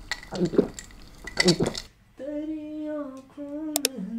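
Clinks of dishes and cutlery, with a brief voice. From about halfway a voice holds long sung notes, and two quick sharp clicks come near the end.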